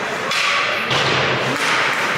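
Ice hockey play in an arena: a few hollow thuds, such as a puck or players hitting the boards.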